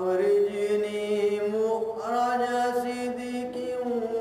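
A man's voice reciting the Quran in Arabic in a melodic chant, drawing out long held notes. The phrase breaks briefly about halfway through and a new one begins.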